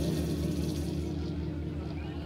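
A held chord on amplified electric guitar ringing out and slowly fading after loud live rock playing, with no new notes struck.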